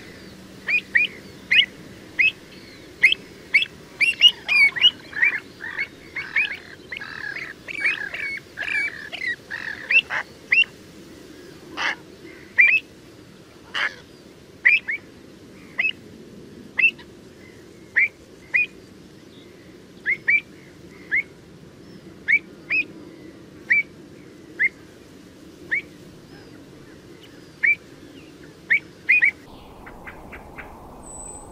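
Pied avocets calling: short, sharp high notes, repeated quickly and overlapping from several birds in the first ten seconds, then spaced out to about one a second, over a steady low background noise.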